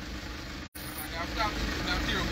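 Low, steady rumble of a car heard from inside the cabin, with a faint voice briefly in the background about a second in.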